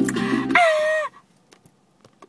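Guitar-backed music with voices cuts off about half a second in. A girl's short, high-pitched vocal cry follows, held for about half a second with a slight dip in pitch, then a few faint clicks.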